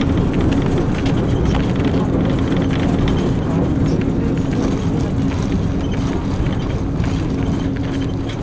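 Inside a LAZ-695N bus under way: the rear-mounted ZIL-130 V8 petrol engine running at a steady pitch over road rumble, with the body and windows rattling.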